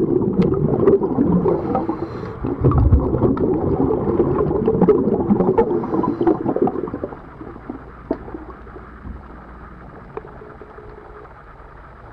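Underwater recording of a scuba diver's exhaled air bubbling out of the regulator: a loud, crackling rush of bubbles for the first seven seconds or so, with a short break near the start of the second burst, then dropping to a much quieter low hiss with scattered sharp clicks.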